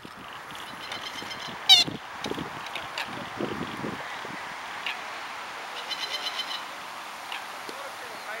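Outdoor ambience with birds calling: one loud, short, harsh call about two seconds in, and two bursts of rapid high chirping, one just before it and one around six seconds.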